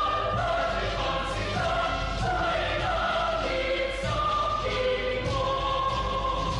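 Choral music: a choir singing held chords that move from note to note without a break.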